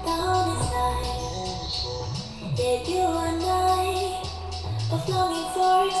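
Pop song with a woman singing over a deep bass line and a steady beat, played as an audio test through the Nebula Cosmos Max projector's built-in 360° speakers. The bass slides up and back down twice.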